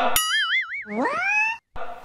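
Cartoon comedy sound effects laid on in editing: a wobbling boing tone for most of a second, then a quick rising whistle-like glide that cuts off suddenly.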